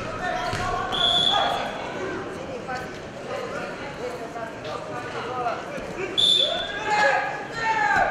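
Men's voices shouting in a large, echoing hall during a freestyle wrestling bout, with two brief high piercing tones, about a second in and again about six seconds in.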